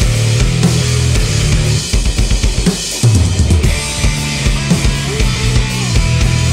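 A live rock band playing an instrumental passage, led by a drum kit with bass drum, snare and cymbals, under electric bass and electric guitar. The sound drops back about two seconds in, then the full band comes back hard at about three seconds.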